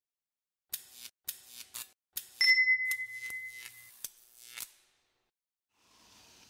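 Logo sting sound effect: a quick run of short swishes and clicks, with a bright ding about two and a half seconds in that rings for about a second and a half.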